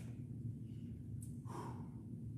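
A man's breathy exhaled "whew", a short sigh about one and a half seconds in, over a steady low room hum.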